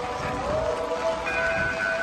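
Music with long held notes, one sliding up into its pitch about half a second in, over a steady rough background noise.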